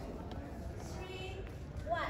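A voice counting the waltz beat aloud, with dancers' shoe steps on a wooden floor.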